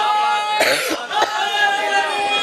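A man coughs once into a public-address microphone about half a second in, a short rough burst. Before it, a steady high tone hangs over the PA; after it, a voice resumes.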